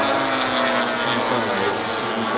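Engines of several large radio-controlled model warbird fighters flying overhead together in a steady, overlapping drone.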